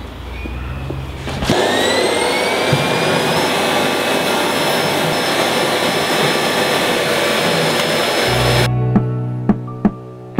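A vacuum cleaner switched on about a second and a half in, its motor whine rising as it spins up, then running steadily as the hose is worked over the fur of a tanned deer hide. It cuts off near the end.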